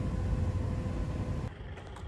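Steady rushing air noise of a car paint spray booth running while parts are being sprayed. It cuts off abruptly about one and a half seconds in, giving way to quieter street background.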